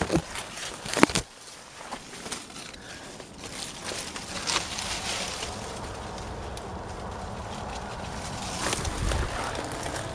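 Handheld camera being moved about over rock and leaf litter: two sharp knocks in the first second, then faint rustling and scuffs over steady outdoor background noise.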